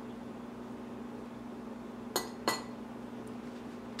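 Two short, sharp clinks of a metal table knife about a third of a second apart, a little past halfway, as the knife is used to top a Kong with cream cheese. A steady low hum runs underneath.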